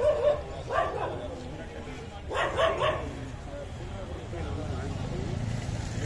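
Street ambience with a steady low rumble and passers-by talking, and a dog barking in short bursts, a few of them close together in the middle.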